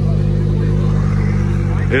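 Lamborghini Huracán's V10 engine idling steadily, an even, unchanging low hum.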